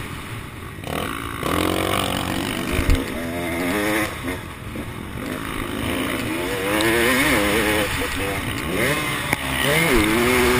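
On-board sound of a motocross bike's engine revving up and down as the throttle is opened and closed, with a sharp thump about three seconds in.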